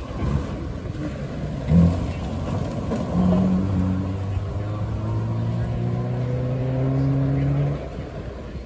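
A rally car's engine at full throttle on a gravel stage: a brief loud blast about two seconds in, then a steady engine note that rises slowly as the car accelerates away. It stops abruptly near the end.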